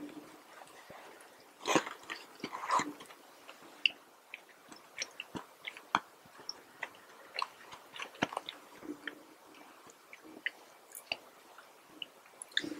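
A person biting into a sesame-seed burger, with the loudest run of bite sounds about two seconds in, then chewing with scattered short mouth clicks.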